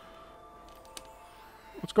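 Faint background music with soft held tones under a quiet pause, with a couple of faint clicks around the middle from a screwdriver working screws out of a plastic back panel. A man starts speaking at the very end.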